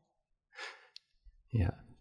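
A short, breathy exhale like a sigh about half a second in, followed by a single faint click.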